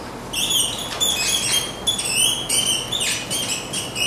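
Marker squeaking across a whiteboard as words are written: a quick run of short, high-pitched squeaks, one per pen stroke, starting about a third of a second in.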